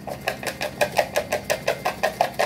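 A tarot deck being shuffled by hand, cards slapping together in a quick, even rhythm of about six a second.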